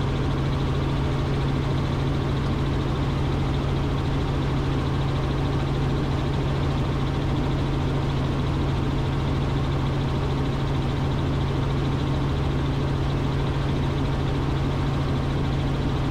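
Robinson R44 helicopter in cruise flight, heard from inside the cabin: a steady, unchanging drone of engine and rotor with a constant low hum.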